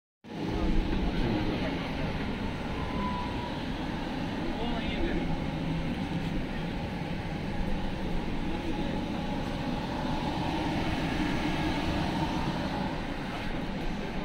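Steady low rumble and hiss inside an air-conditioned railway passenger coach, heard from within the carriage.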